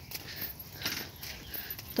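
Quiet outdoor pause with a few soft rustles and footsteps on a weedy dirt path.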